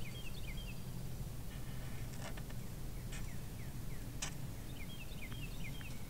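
A songbird chirping a short phrase of quick descending notes near the start, repeated near the end, over a steady low outdoor rumble, with a few light clicks in between.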